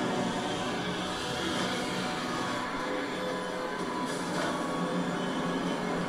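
Music with sustained low tones under a dense, rushing noise layer, holding steady after an abrupt start.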